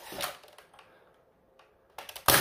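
Dart Zone Pro MK4 pump-action foam dart blaster being primed: a short mechanical clatter in the first half second, then quiet with a faint click at the very end.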